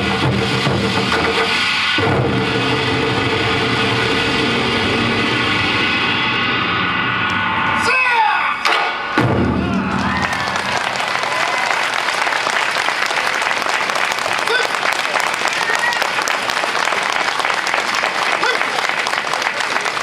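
Taiko drums played in a fast, dense roll toward the end of a piece, with drummers' drawn-out shouted calls about eight seconds in as the piece finishes. Audience applause then fills the rest.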